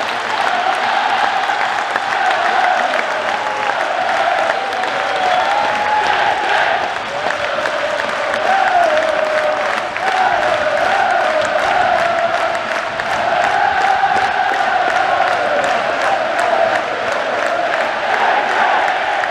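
Football crowd singing a chant together, with hand clapping running through it.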